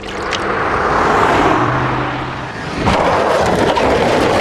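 Cartoon car sound effect: a loud rushing noise of driving fast through traffic. It swells up, eases about two and a half seconds in, then surges again, with a brief low hum in the middle.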